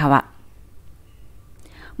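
A woman's narrating voice finishes a word, then there is a pause of under two seconds with only faint background hiss and a soft breath before she speaks again.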